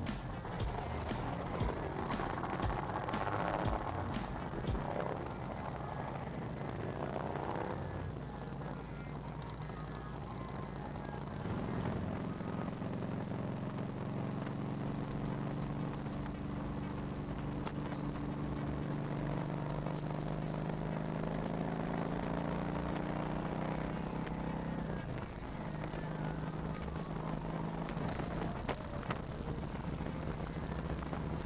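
Touring motorcycle's engine and wind noise while riding. The engine rises in pitch through the gears in the first several seconds, holds a steady note at cruising speed, and drops in pitch about 25 seconds in as the bike eases off for a curve.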